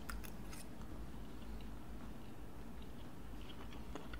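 Faint chewing of mouthfuls of soft waffle, with a few light fork clicks near the start.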